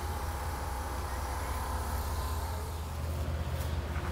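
Outdoor street ambience: a steady low rumble under a faint, even background wash, with no distinct events.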